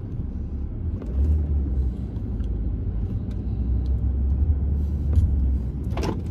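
Steady low rumble of a car heard from inside the cabin while driving, with a few faint ticks.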